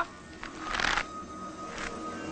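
A short rushing swish about half a second in and a fainter one near the end, as background music with a held note comes in.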